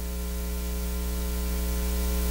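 Steady electrical mains hum with a layer of hiss from the audio and recording equipment.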